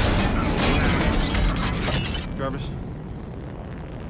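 Film action sound effects: a dense run of clanks and crashes over a deep rumble, which cuts off suddenly a little after two seconds in, followed by a short grunt.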